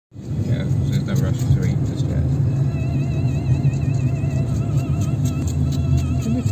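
Steady low rumble of a moving road vehicle heard from inside the cabin, with a voice and music playing over it.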